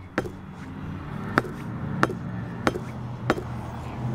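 A steel lug wrench pounding the edge of a car tire beside the rim, five sharp knocks spaced about half a second to a second apart. The blows push the tire's bead back so it reseats on the rim and seals a slow bead leak.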